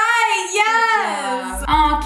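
A woman's voice drawn out in a long, high sing-song 'ooh' whose pitch glides up and down, ending about a second and a half in; a steady low hum comes in as it ends.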